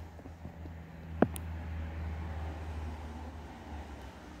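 Plastic lid pulled off a plastic food bowl, with one sharp click as it comes free about a second in, then faint handling rustle over a low steady hum.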